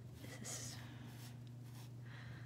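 Faint, soft rustling of cotton balls being pulled apart and stretched by hand, strongest about half a second in, over a steady low hum.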